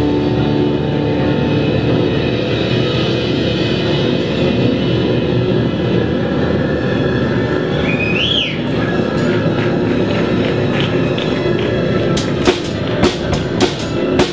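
Live band playing an instrumental passage: a sustained wash of electric guitar and synthesizer over drums. A short high tone rises and falls a little past the middle, and in the last two seconds the wash gives way to separate sharp drum hits.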